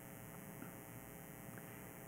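Faint, steady electrical mains hum with evenly spaced overtones, picked up through the podium microphone and sound system.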